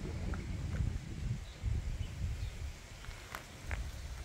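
Outdoor ambience: an uneven low rumble of wind and handling on the microphone while walking, with a few faint bird chirps and a couple of sharp clicks near the end.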